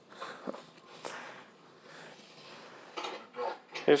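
Faint handling noise: a few soft clicks and rustles as the socks and their cardboard label are picked up and moved close to the phone.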